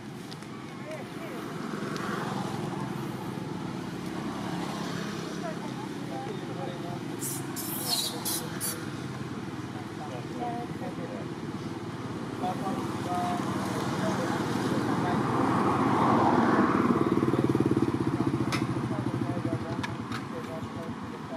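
A motor vehicle's engine running nearby, growing louder from about fourteen seconds in and loudest around sixteen to eighteen seconds, with people's voices in the background.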